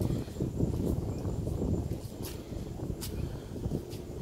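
Wind buffeting the microphone outdoors: an uneven low rumble, with a few faint sharp ticks in the second half.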